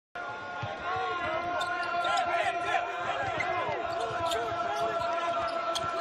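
A basketball being dribbled on a hardwood court, with many short squeaks from sneakers and a steady tone underneath.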